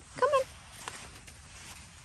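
A woman's voice briefly coaxing "come on" just after the start, then quiet outdoor background with a couple of faint soft clicks.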